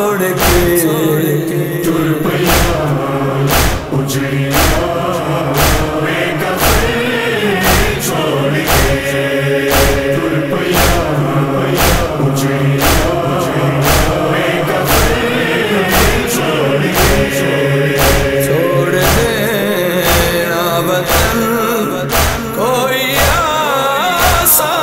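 Nauha, a Shia lament: male voices chant in chorus over a steady, evenly spaced percussive beat.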